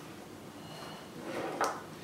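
Old Craftsman lineman's pliers cutting through a two-wire extension cord: a short crunch that ends in a sharp snip about a second and a half in.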